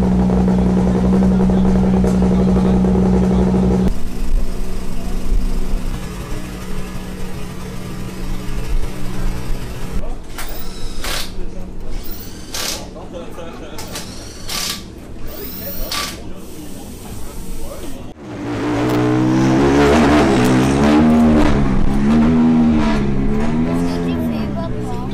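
Rally car engine running at a steady idle for the first few seconds. Next come a handful of short bursts from a pneumatic wheel gun during a wheel change. From about three-quarters of the way through, an engine is revved up and down again and again.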